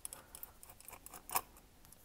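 Small screwdriver backing a tiny screw out of the plastic chassis of a 1:18 diecast model car: faint clicks and scraping, with one louder click a little after halfway.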